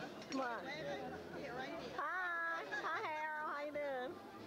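Several people talking at once in unclear chatter, with one high-pitched voice drawn out in the second half.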